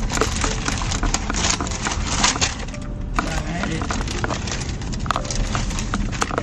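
Paper takeout bag rustling and crinkling as hands dig into it and pull out a small food box, in many short sharp crackles over the low rumble of a moving car.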